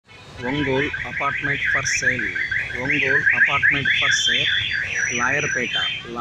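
A high-pitched warbling alarm tone, sweeping rapidly up and down several times a second, with a man talking over it.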